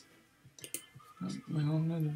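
Two quick computer mouse clicks close together about two-thirds of a second in, followed from just past a second by a man's drawn-out, steady-pitched 'um'.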